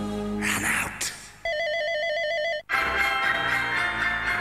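Mobile phone ringing with a rapid electronic trill for about a second, starting about one and a half seconds in. It comes between the end of one advert's music and sound effects and a cut into new music.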